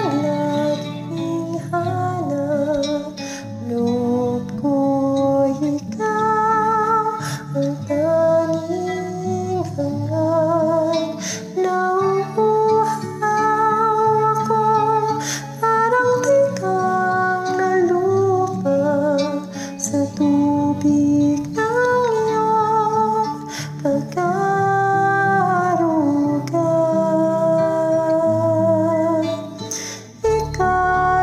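A woman singing a slow ballad with vibrato over a karaoke backing track of plucked guitar and low sustained accompaniment. Her notes are held a second or two each, in phrases with short breaks.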